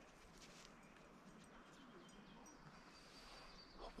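Near silence: faint outdoor ambience with a few faint, brief high-pitched tones.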